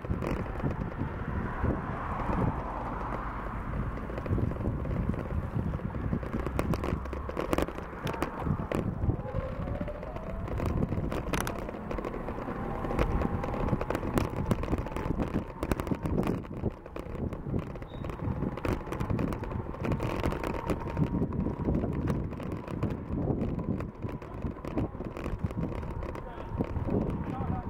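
Wind buffeting the microphone of a camera carried on a moving bicycle, with tyre noise on asphalt and the bike's rattles and knocks. A faint steady whine runs through the second half.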